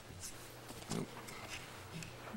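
Quiet meeting-room tone with a faint steady low hum, broken about a second in by one short, quiet spoken reply.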